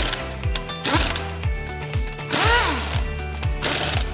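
An air impact wrench fires in short bursts on the wheel bolts, with a longer burst in the middle whose whine rises and falls, tightening the remounted wheel. Background music with a steady beat runs underneath.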